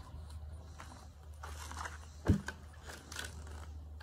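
A person coming up and sitting down in a wooden director's chair: scattered scuffs and creaks, with one loud thump about halfway through, over a steady low hum.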